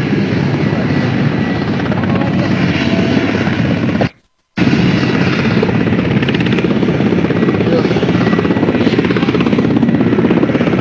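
Steady, loud helicopter rotor and engine noise from nearby recovery helicopters on the landing zone. The sound cuts out completely for about half a second a little over four seconds in, then resumes.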